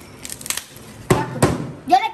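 A few short knocks and handling sounds of things on a table, the loudest two about a second in and half a second later. A bag of salt is being handled and set down.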